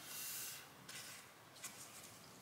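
Faint scraping of a soap bar sliding on the slotted plastic base of a wire soap cutter: one longer stroke at the start, then two brief scuffs.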